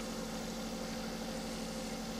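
WAECO truck parking air conditioner running with its compressor on and cooling, giving a steady hum with a constant low tone, its fans set one step higher.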